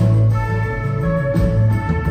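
Live Americana band playing: ringing guitars over a steady low bass note, with drums, the guitar chords shifting a couple of times.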